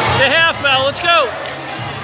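A voice shouting from the mat side, a few loud high-pitched yells in the first second, over the background noise of a crowd in a large hall.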